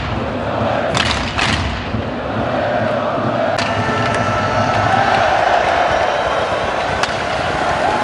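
Packed ice-hockey arena crowd cheering and chanting in unison as fans celebrate a win. Two sharp bangs come about a second in.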